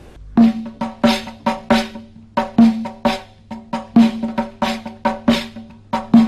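Tunisian nawba music: sharp drum strokes in a steady, moderately paced rhythmic pattern, each with a ringing pitched tone, playing the slower ftayhi rhythm.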